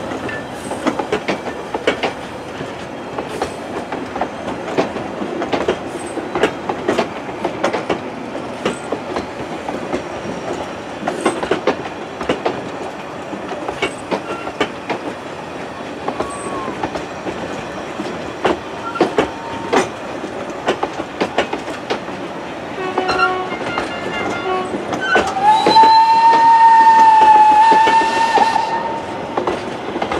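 Steam train's carriages rolling past, wheels clicking steadily over the rail joints. Near the end a loud steady whistle sounds for about three seconds, after shorter broken tones a couple of seconds before.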